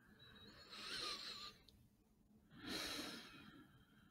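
A man's slow, quiet breathing close to the microphone: two long breaths about two seconds apart, each lasting about a second.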